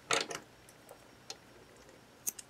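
Hand-handling sounds of crochet work: a brief rustle of yarn and hook just after the start, then a couple of faint light clicks as metal scissors are brought up to cut the yarn.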